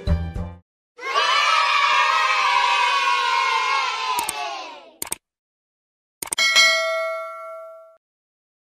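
Children cheering and shouting together for about four seconds, followed by a couple of short clicks. Then a bright bell ding rings out and slowly fades: a subscribe-and-notification-bell outro sound effect, after the end of a cheerful children's music track.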